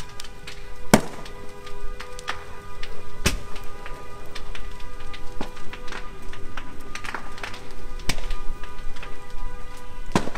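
Burning cars crackling and popping, with sharp bangs from the fire, the loudest about a second in, at three seconds and at eight seconds. A steady pitched tone sounds under the fire throughout.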